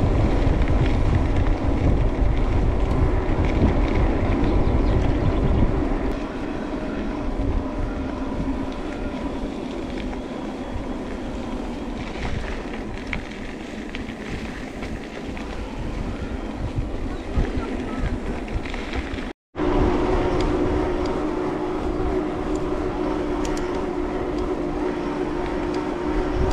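Riding an electric mountain bike: wind buffeting the handlebar-mounted microphone and tyres rolling on the road, with a faint steady whine of the drive. The sound cuts out for a moment about three-quarters of the way through, and the whine is clearer afterwards.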